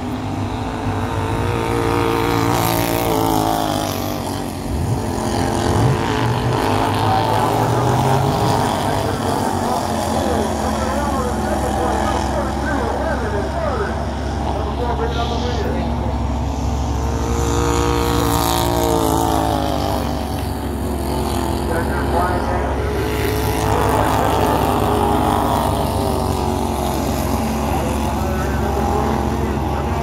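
Slingshot-class dirt-track race cars running in a pack around the oval. Their engine notes rise and fall as they lap, swelling each time the field comes past, about 6, 18 and 24 seconds in.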